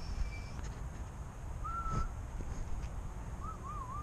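A bird calling outdoors: a short, clear whistled note about two seconds in, then a wavering whistled note near the end, over a low rumble.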